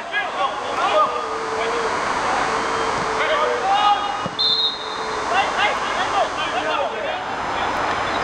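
Footballers shouting and calling to each other across the pitch. A short referee's whistle blast comes a little past halfway, stopping play.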